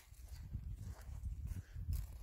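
Footsteps on dry grass and twigs, heard as irregular low thuds with rumble from the handheld camera moving.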